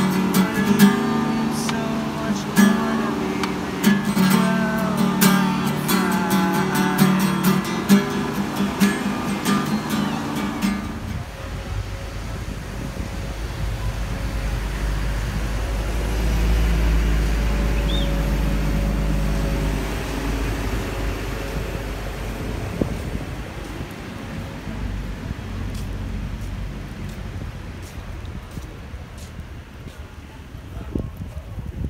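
Small-bodied acoustic guitar played with the fingers, plucked notes and chords ringing. It stops abruptly about ten seconds in, giving way to a low wind rumble on the microphone and street noise.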